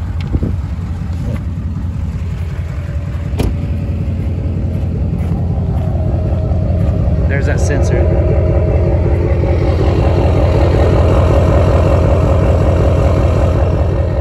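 Duramax 6.6 L turbo-diesel V8 idling steadily through an emissions-deleted 5-inch exhaust, growing louder as the tailpipe gets close. A single knock about three and a half seconds in.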